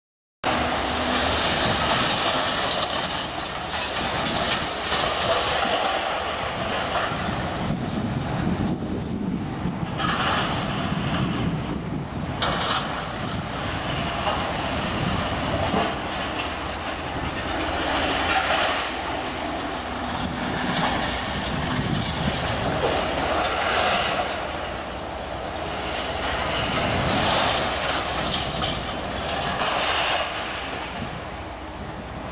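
Distant Liebherr scrap handlers working a ship: a dense, steady industrial din of machine engines and scrap metal, with louder surges every few seconds. It starts abruptly just after the opening.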